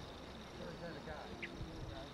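A flying insect buzzing faintly over quiet open-air ambience, with faint voices in the distance and a short chirp about one and a half seconds in.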